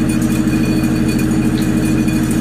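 An engine idling steadily: a low drone with a fast, even pulse.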